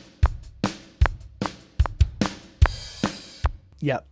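Recorded drum kit played back from a multitrack session: kick and snare hits at a fast tempo with hi-hat, and a cymbal washing for about half a second in the second half. This is the unedited take, with the playing of a bar drifting out of time, described as really out of time.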